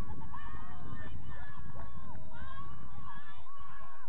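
Several birds calling over one another in drawn-out honking notes, over a steady low rumble.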